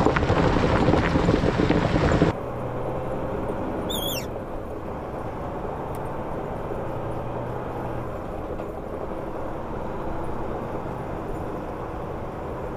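Wind and road rush on an outside camera of a moving logging truck, loud for the first two seconds and then cut off abruptly. After that comes a quieter steady rumble with a low hum that stops about two-thirds of the way through, and one brief falling whistle about four seconds in.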